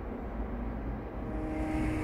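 Steady low background rumble, with faint held musical notes fading in over the last part.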